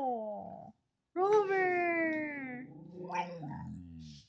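Siberian husky 'talking' back to the command to roll over instead of doing it: a short howling whine that slides down in pitch, then a longer one about a second in, trailing off lower and rougher near the end.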